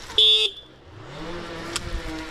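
A single short beep of a dirt bike's electric horn, a flat buzzy tone lasting about a quarter of a second, just after the start. A fainter rising tone and a sharp click follow near the end.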